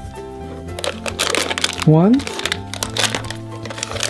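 Crinkly foil toy packaging being handled, crackling most from about a second in, over steady background music.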